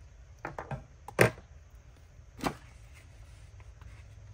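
Craft scissors handled and set down on a cutting mat: four short sharp clicks and knocks, the loudest about a second in.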